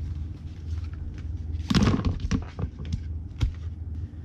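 Clear plastic decal packets and cards being set down and shuffled on a desk: handling noise with light clicks and a louder crinkling rustle about halfway through.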